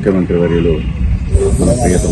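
A man speaking, over a steady low rumble.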